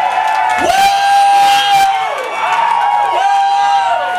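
Audience cheering and whooping: several overlapping long 'woo' calls that swoop up and down, one held for over a second, over general crowd noise.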